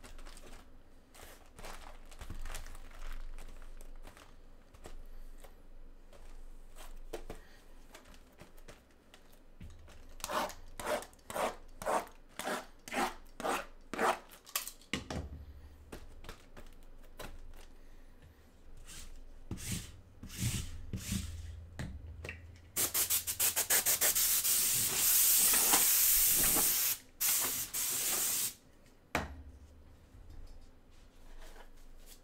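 Cardboard boxes being handled, slid and stacked on a table. About a third of the way in there is a quick run of knocks and scrapes, then several seconds of loud steady rubbing near the end.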